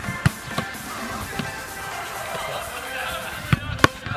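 Background music with a few sharp thuds of a football being struck: a hard kick a moment in, and two more thuds close together near the end.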